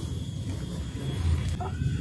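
A young child's short, high-pitched vocal sound near the end, over a steady low rumble of background noise.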